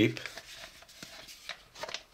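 Hard plastic toy pieces being handled, with a few light clicks and rubs as the parts are moved and fitted.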